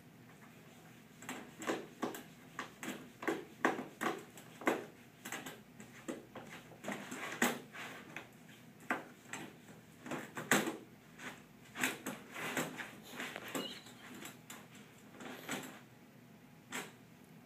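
Wire door of a plastic pet carrier rattling and clicking as a cat paws and pushes at it to get back inside, irregular clatters a few times a second that start about a second in and stop just before the end.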